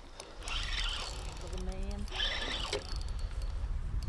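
Spinning reel being cranked against a hooked pike, under a steady low rumble from wind and handling on a chest-mounted camera, with a faint voice in the background.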